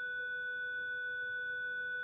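A steady electronic tone, pitched with several even overtones, holding at one level without change.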